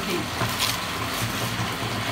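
Bath tap running, water pouring steadily into a filling bathtub.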